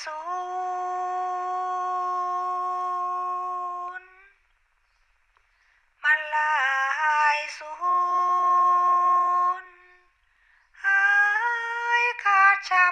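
A Thai Buddhist blessing chant sung in a high voice. A long held note stops about four seconds in. From about six seconds a new phrase rises and falls and settles on another held note, and a fresh phrase begins near the end.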